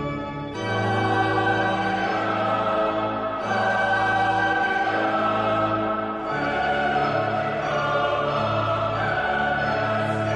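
A mezzo-soprano singing a Christmas carol with a mixed choir and string orchestra. They hold long, sustained chords that change about every three seconds.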